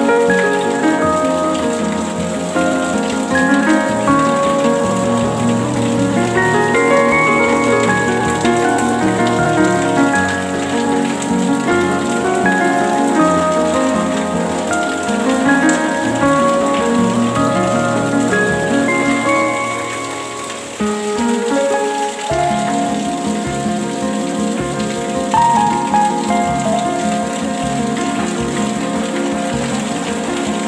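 Steady rain hiss under gentle instrumental relaxation music made of slowly changing held notes. Just past two-thirds of the way through the music thins briefly, then a new chord comes in.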